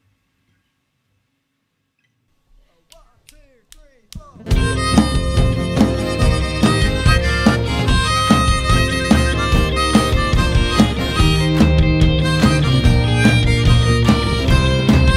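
Near silence, then a few faint clicks, then a live band comes in all at once about four and a half seconds in: harmonica leading over drums and guitars.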